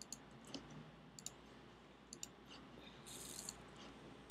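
Near silence with a few faint scattered computer clicks, and a short soft hiss a little after three seconds.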